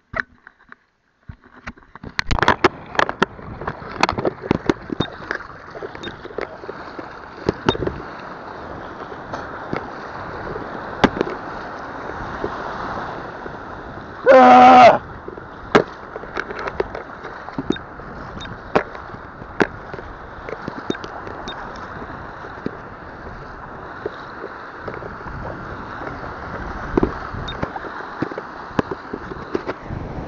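Sea water splashing and sloshing around an action camera held in the shallow surf, muffled, with many sharp knocks and crackles of water striking the camera. About halfway through comes one brief, loud shout.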